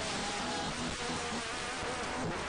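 Choir singing a worship song, the voices faint and blurred under a steady, loud hiss.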